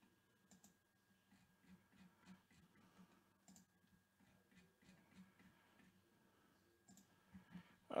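Faint, irregular computer mouse clicks over near silence.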